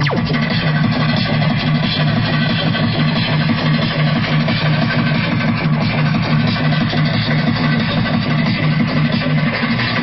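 Electronic tekno music from a free-party sound system, loud and continuous with a pulsing bass line.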